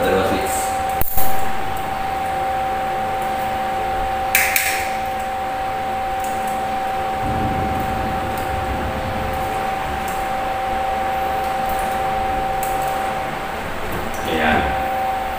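Pliers working the wires and terminals of a three-gang wall switch: a sharp click about a second in and a shorter, higher click about four and a half seconds in, over a steady hum.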